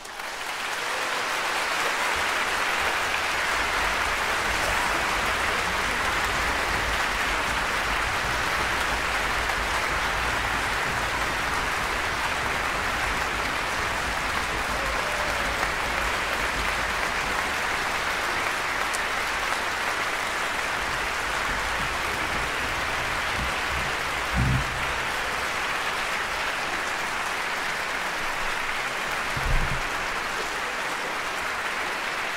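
Concert audience applauding, starting suddenly at the end of the piece and holding steady. Two brief low thumps sound in the last few seconds.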